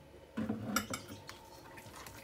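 A utensil clinking against a stainless steel mixing bowl, a short clatter about half a second in, followed by quieter sounds of cooked rice being handled in the bowl.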